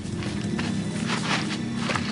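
Quick footsteps on bare dirt ground, about three to four steps a second, over a steady low held tone.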